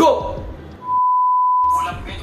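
A single steady electronic beep, one pure tone lasting about a second, with the other audio cut out beneath it.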